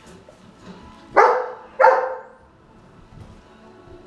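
A dog barks twice, loudly, about half a second apart.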